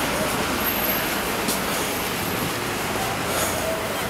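Steady street noise of traffic on a snow-covered city street, an even hiss with no clear single vehicle standing out.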